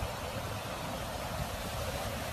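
Fast-moving floodwater rushing across a flooded field, a steady hiss of water noise.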